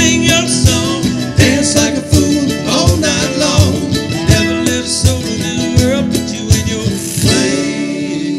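Live acoustic country band playing between sung lines: strummed acoustic guitar and mandolin over a steady percussion beat, with gliding melodic lines on top.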